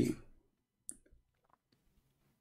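The last of a man's word fades out, then near silence broken by one short, faint click a little under a second in, followed by a few fainter ticks.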